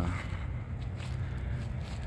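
A few faint footsteps crunching on dry leaf litter and debris, over a steady low rumble.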